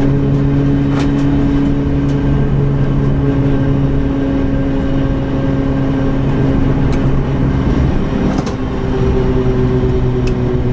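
Renault Clio RS engine heard from inside the stripped, caged cabin, running hard at steady high revs. The note breaks briefly a little after eight seconds at a gear change, then picks up again. A few sharp clicks and rattles sound inside the car.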